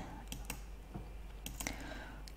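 A few faint clicks of a computer mouse as stones are placed on an on-screen Go board, over quiet room tone.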